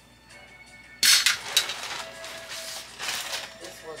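Clear plastic garment bag crinkling and rustling as it is handled in a closet: a sharp, loud burst of crackling about a second in that lasts about a second, and a second shorter burst near three seconds.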